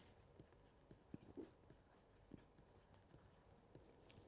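Near silence: room tone with a few faint, scattered ticks of a stylus writing on a tablet screen.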